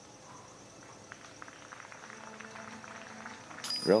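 Faint outdoor ambience: a steady, high-pitched insect trill, with scattered soft clicks that build slightly toward the end.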